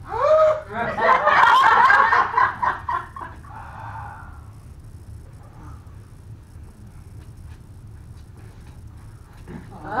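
Audience laughter: a short rising vocal cry opens into a burst of laughter lasting about three seconds, which then dies down to a low murmur. Near the end a performer cries out "Ah!" and the laughter rises again.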